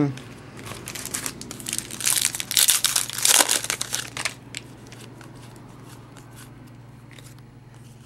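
Crinkling of a trading card pack's wrapper for about two seconds, then a few soft clicks and rustles of cards being handled, over a low steady hum.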